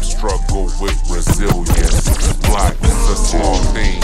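Slowed-down, chopped and screwed hip hop track with rapping, played from a DJ controller, the record worked back and forth on the jog wheel so the vocals and beat slide up and down in pitch.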